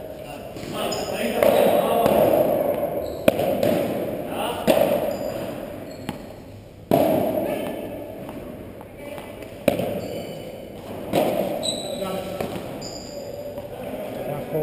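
Padel ball being struck back and forth in a rally: sharp, separate hits every one to three seconds, the loudest about seven and ten seconds in.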